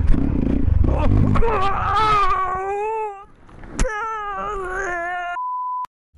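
Motorcycle engine and clatter, then the winded rider lets out long, wavering groaning wails, two stretches broken by a sharp click. Near the end comes a short steady test-tone beep that cuts off suddenly.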